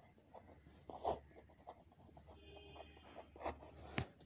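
Pen writing on lined notebook paper: faint scratching strokes, the strongest about a second in.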